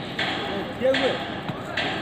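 A hammer-throw hammer whooshing through the air as the thrower winds it around overhead: three regular swishes about three-quarters of a second apart, with people talking close by.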